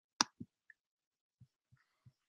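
A single sharp click about a quarter of a second in, followed by a few faint, soft low thuds; otherwise near silence.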